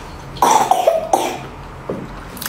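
A person coughing: a loud burst about half a second in, then a second, shorter one about a second in.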